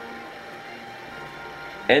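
Quiet room tone: a low steady hum with a few faint steady tones, and a man's voice starting at the very end.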